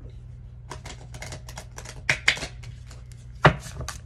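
A deck of oracle cards being hand-shuffled: a quick run of rapid clicks as the cards flick against each other, broken by three louder knocks, the loudest about three and a half seconds in.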